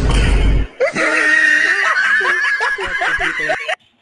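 A loud burst of rumbling noise, then a child's high-pitched laughter with a held squeal for about three seconds, cut off suddenly near the end.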